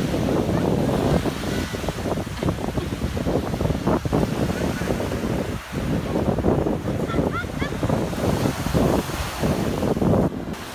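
Wind buffeting the microphone over small surf waves washing onto a sandy beach.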